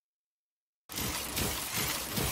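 Silence, then about a second in a dense, crackling clatter starts abruptly and carries on, with irregular low thuds underneath: a sound-effect track, likely for the cartoon machine.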